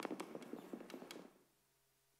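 Chalk tapping and scratching on a blackboard as a short label is written: a quick run of small taps and strokes over the first second or so.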